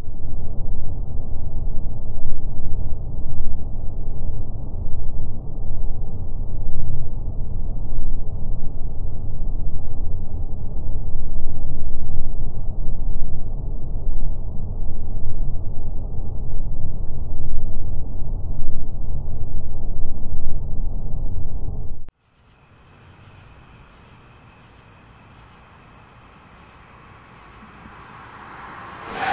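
Loud, steady low rumbling noise that cuts off abruptly about 22 seconds in. After it comes a faint high chirping, pulsing a few times a second, that grows a little near the end.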